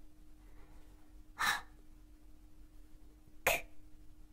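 A woman's voice giving two unvoiced letter sounds: a breathy /h/ about a second and a half in, then a short, sharp /k/ about three and a half seconds in.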